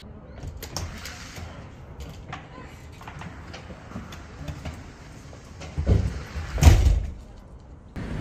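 Footsteps and rustling handling noise from a phone camera being carried while walking, over a low outdoor rumble, with two louder thumping rushes about six and seven seconds in.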